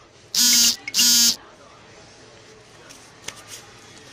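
An electric buzzer sounding twice: two loud, identical buzzes, each under half a second, about half a second apart, followed by a few faint clicks.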